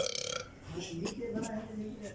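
A person's voice: a sudden, loud, half-second throaty sound, then quieter indistinct voices.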